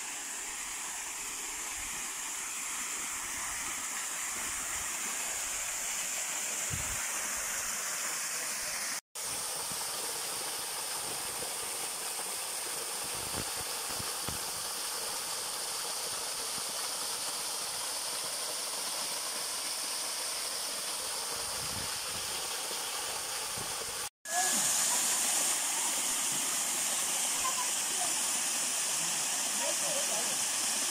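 Small waterfall pouring over rock into a pool: a steady rush of falling, splashing water. It cuts out briefly twice and is louder after the second break.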